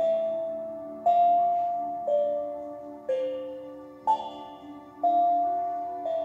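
Small steel tongue drum struck about once a second, a slow melody of single ringing notes that each fade before the next, over soft ambient background music.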